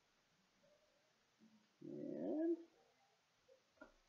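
A domestic cat meowing once, a single pitched call just under a second long about two seconds in, rising then falling in pitch; otherwise quiet room tone.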